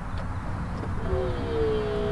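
Daihatsu Copen's electro-hydraulic folding hard top starting to operate: about a second in, its pump motor starts with a whine that rises briefly in pitch and then holds steady, over a low rumble.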